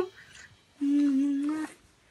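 A person humming one steady note with closed mouth for just under a second, starting about a second in.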